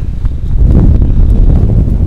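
Strong wind buffeting a clip-on microphone: a loud, low rumble that gets louder about half a second in and stays so.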